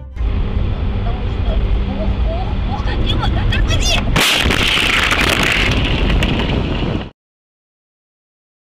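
Vehicle road noise with a low rumble, then a sudden loud collision impact about four seconds in, followed by about three seconds of harsh crunching and grinding noise that cuts off abruptly.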